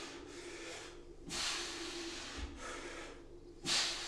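A man breathing hard in and out under the strain of one-arm kettlebell rows, with three or four long, noisy breaths about a second or so apart.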